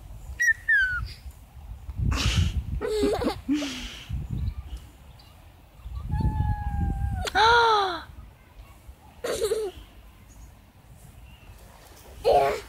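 A young child's short wordless squeals and exclamations, a few seconds apart, the loudest a rising-and-falling cry about seven and a half seconds in. Wind rumbles on the microphone throughout.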